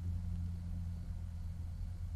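A steady low hum runs through the pause in speech, with a faint hiss above it and no other distinct sound.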